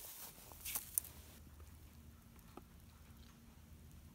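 Faint rustling and light crackle of dry hay around a moisture tester's probe pushed into a small square bale, with one light click about a second in. Then low, faint background with a faint steady hum in the second half.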